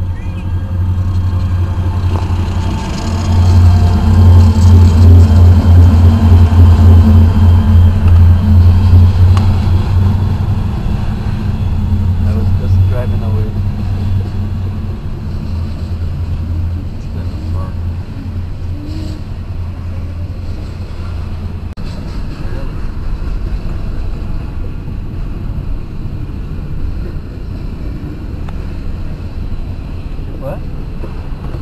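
Three EMD SD40-2 diesel locomotives, turbocharged V16s, passing with a deep steady engine drone, heard from inside a car. The drone swells about three seconds in and is loudest for the next several seconds. It then eases into the lower, steadier rumble of the freight cars rolling by.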